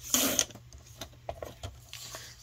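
Sliding-blade rail paper trimmer cutting a sheet of printed paper: one short swipe of the cutter just after the start, followed by a few faint clicks and paper rustles.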